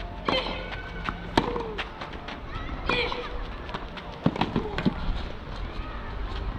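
Tennis rally on a clay court: sharp racket-on-ball strikes about a second or so apart, with short voiced sounds next to some of the shots.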